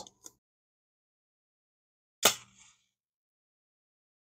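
A paper book match struck once about two seconds in: a sharp scrape, then a brief hiss as it catches and flares. The old match lights.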